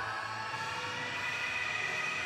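Steady background hum of a gym room, with faint steady tones running through it and no clank from the cable weight stack.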